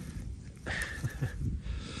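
Dry fallen oak leaves and grass rustling and crackling as a hand rummages among them and picks up acorns.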